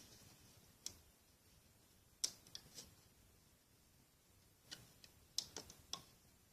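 Faint, scattered clicks of a loom hook and rubber bands against the plastic pins of a Rainbow Loom as bands are looped. There are single ticks, then a short cluster near the end.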